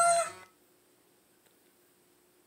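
The tail of the Geico camel's held 'ooh' hoot, a voice played through a TV speaker, ending about half a second in. Then near silence with a faint steady hum.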